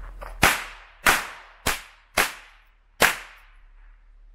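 Small stick firecracker going off: five sharp bangs about half a second apart, each dying away quickly, the last a little under a second after the fourth.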